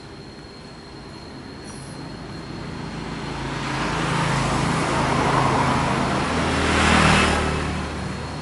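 A motor vehicle passing by: its engine and road noise build over several seconds, are loudest about seven seconds in, then fade away.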